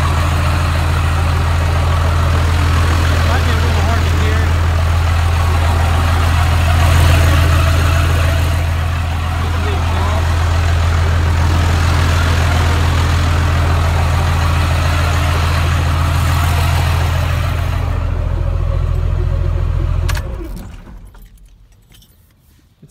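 Pickup truck engine idling steadily with a strong low drone, swelling slightly about seven seconds in, then shut off about 20 seconds in. It is run so its failed automatic transmission can be judged by ear; the owner takes the noise for the torque converter.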